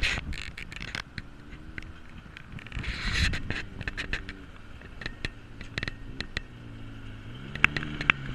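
Small ATV engine running at low throttle as it rides past on a gravel trail, with a second off-road engine coming in near the end. Many sharp clicks and crackles run over the engine sound.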